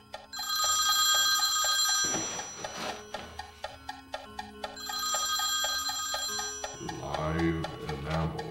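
Corded landline telephone ringing twice, each ring about a second and a half long. Underneath runs a score with a steady tick about four times a second and low held tones, and a low voice rises near the end.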